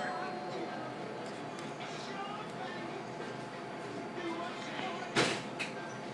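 Background chatter of other diners in a restaurant, a steady indistinct murmur of voices, with one sharp clatter about five seconds in and a smaller one just after.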